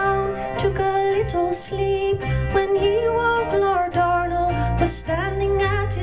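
Live folk music: a woman singing a traditional ballad into a microphone over plucked-string accompaniment.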